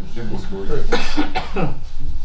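Listeners answering with short spoken replies, with a cough about a second in.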